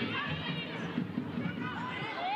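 Football match ambience: a sparse stadium crowd murmuring, with faint distant shouts and calls during open play.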